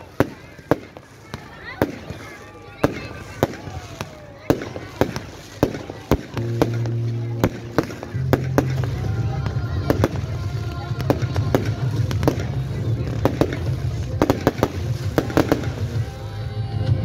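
Fireworks going off in quick succession, a sharp bang or crackle every second or so, sometimes several close together.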